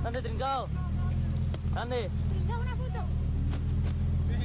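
A car engine running as a steady low hum that grows stronger about a second in, with several short voice calls over it.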